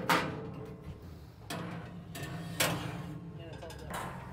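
Metal knocks and scrapes of trays and wire racks being set back into the steel cabinet of a Camp Chef Smoke Vault smoker: three sharp clanks, at the start, about a second and a half in and again about a second later, with lighter scraping between.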